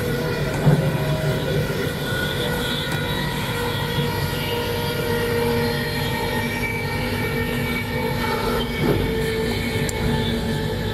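A train running, heard from inside the passenger carriage: a steady drone with several held tones that shift slightly, and a small knock or bump about a second in.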